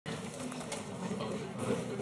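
Indistinct chatter of several people talking in a lecture hall, with no clear words.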